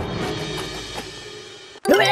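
Cartoon soundtrack: a thud right at the start, then music with drums fading away, cut off suddenly near the end as a new cue with held tones begins.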